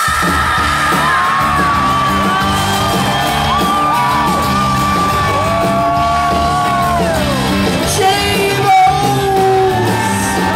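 Live rock band playing loudly in a large hall: bass and drums come in all at once at the start, under a man's yelled, drawn-out singing and long, bending lead notes.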